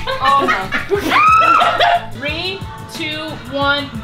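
Background music with an even beat under women's excited shouting and laughter, loudest about a second in.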